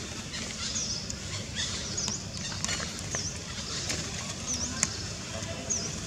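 Outdoor ambience: a short, high, dipping call repeats about once a second over a low background rumble, with a few faint clicks.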